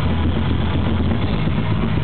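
Black metal band playing live at full volume: distorted electric guitars, bass and drums, heavy in the low end.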